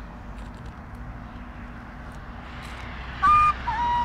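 Steady outdoor background hiss and low hum, then about three seconds in a kaval, a Bulgarian end-blown flute, starts a held note that slides down to a lower note just before the end.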